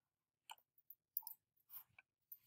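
Near silence with a few faint, short computer-mouse clicks scattered through it.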